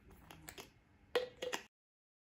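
Faint clicks and taps of a plastic hamster water bottle and its clip-on holder being handled, the loudest a short knock a little past one second in; the sound then cuts out.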